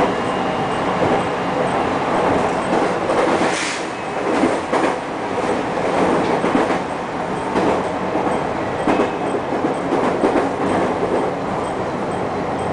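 JR Kyushu 813 series electric train running, heard from the cab: a steady running rumble with irregular sharp clacks as the wheels cross rail joints and points.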